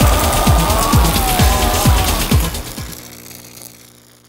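Music with a steady deep drum beat, about three beats a second, under a wavering higher line; it fades out over the last second and a half.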